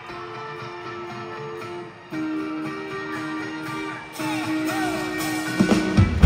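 Live rock band intro in an arena: held guitar chords that change about every two seconds, with a few crowd whoops; bass and drums come in just at the end.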